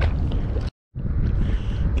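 Low, steady wind rumble on the microphone over water moving around the wader, broken by a sudden short dropout to silence a little under a second in.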